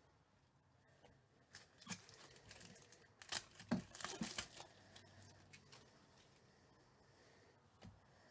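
Faint crinkling and tearing of a trading-card pack wrapper being opened, in a burst of crackles a few seconds in, with soft clicks of cards being handled before and after.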